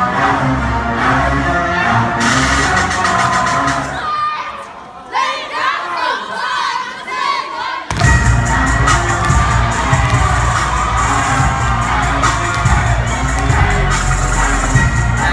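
Loud dance music with a heavy steady beat that cuts out about four seconds in, leaving a crowd of young people cheering and shouting; the music comes back in abruptly about eight seconds in.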